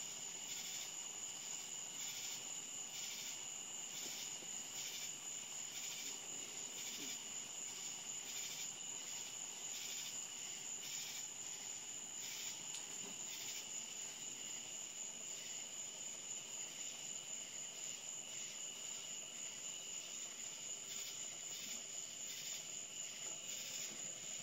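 Crickets chirping steadily, a high trill with a regular pulse, over a low hiss from water boiling hard in a pan on an alcohol stove.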